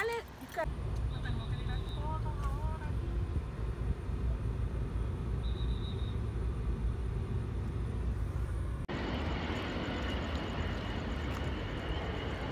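Outdoor street traffic: a steady low rumble of cars passing, with faint voices and two short high beeps. About nine seconds in the sound changes abruptly to a fuller hiss of traffic.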